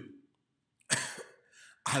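A man coughs once, a short sudden burst about a second in that fades quickly.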